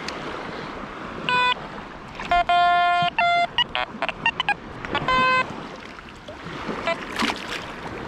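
Quest X10 Pro metal detector beeping through its open speaker: a string of short electronic target tones at several different pitches, the longest held for just over half a second about two and a half seconds in. Shallow sea water splashes and laps around it, with wind on the microphone.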